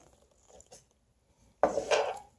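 Small metal pins and tools being handled on a work table: a few faint clicks about half a second in, then a louder clatter lasting about half a second near the end.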